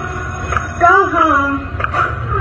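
A girl singing into a microphone over a backing track through stage speakers; a short sung phrase rises and falls about a second in, over the track's low accompaniment.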